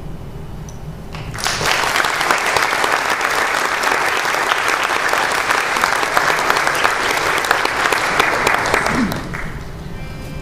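Audience applauding, starting suddenly about a second and a half in and dying away near the end.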